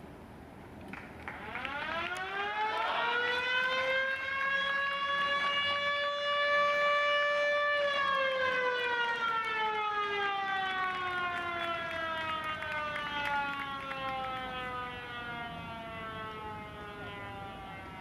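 Stadium motor siren sounding the end of the game. It winds up over a couple of seconds, holds a steady wail for about five seconds, then slowly winds down in pitch.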